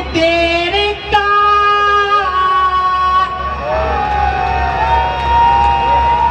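A man singing a Haryanvi ragni into a stage microphone, holding long drawn-out notes and sliding between pitches.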